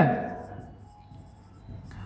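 Marker pen writing on a whiteboard: faint, scratchy strokes.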